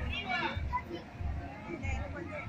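Children's voices calling and chattering, with adults talking, over a low, uneven rumble.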